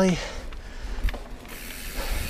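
Mountain bike rolling along dirt singletrack: tyre noise, mechanical rattling and ratcheting from the bike, and a low wind rumble on the camera microphone, with a single click about a second in.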